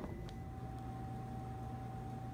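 Desktop laser engraver humming steadily while idle, a thin constant whine over a low hum.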